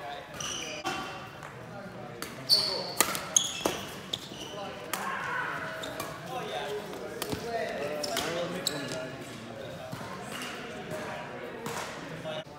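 Badminton doubles rally: sharp cracks of rackets striking the shuttlecock, with a quick cluster of hits a few seconds in and single hits later, along with short high squeaks of shoes on the sports-hall floor, all echoing in the hall.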